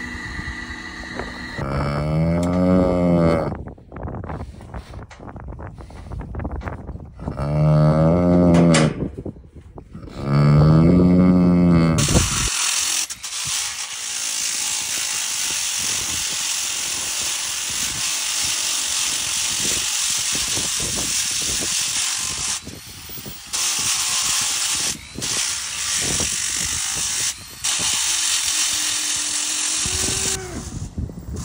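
A steer lowing three times, each a drawn-out moo that rises and falls in pitch. About twelve seconds in, a Makita angle grinder starts grinding down a cloven hoof with a steady hiss, pausing briefly three times near the end.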